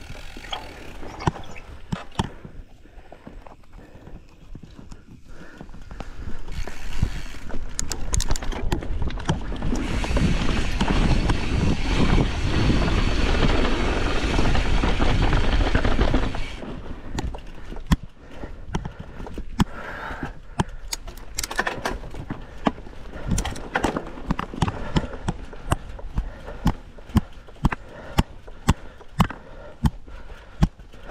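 Mountain bike running fast down a dirt trail: tyres on loose dirt with frequent knocks and rattles from the bike over bumps and roots. From about six seconds in to about sixteen seconds there is a loud rush of wind on the microphone at speed, then the sharp knocks and clatter come thick again toward the end.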